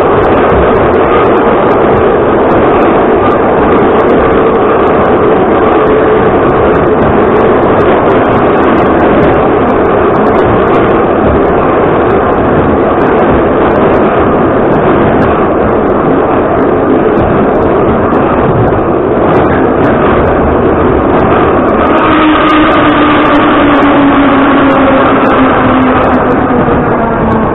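Ezh3 metro car running through the tunnel: a loud, steady rumble of wheels on rail with scattered clicks. About 22 seconds in, a traction-motor whine comes up and falls in pitch as the train slows.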